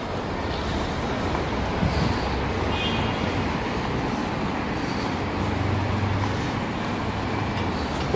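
Steady city road traffic: a continuous rush of passing cars and other vehicles, with a low hum swelling briefly past the middle.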